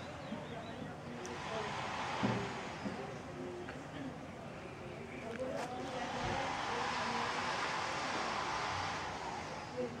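Steady rushing road and wind noise of a car, with indistinct voices underneath.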